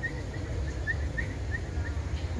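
A bird chirping: short high chirps repeated evenly, three or four a second, over a low steady rumble.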